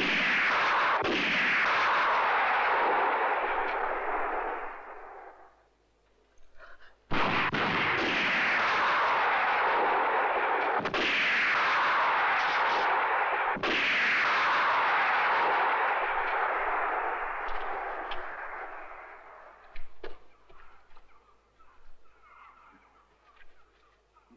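Four gunshots: one at the start, then three more about 7, 11 and 13 seconds in. Each rings out with a long echo that slides down and fades over several seconds.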